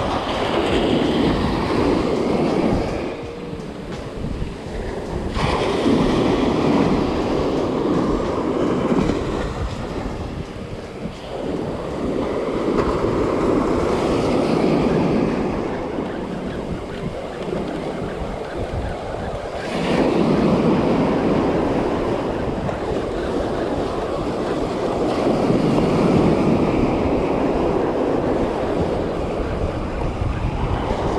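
Small surf waves breaking and washing up the beach, rising and falling in several surges of a few seconds each, with wind on the microphone.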